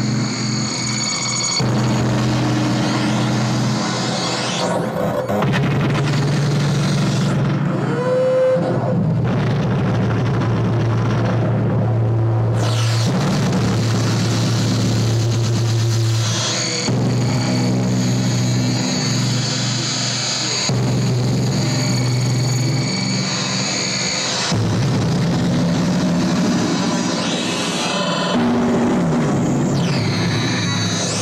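Electronic synthesizers playing loud sustained drones: low steady tones that switch abruptly to new pitches every few seconds over a dense noisy layer, with a short rising glide about eight seconds in.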